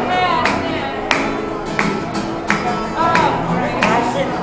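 Live acoustic guitar strummed under a man singing, with hand claps keeping time about every two-thirds of a second.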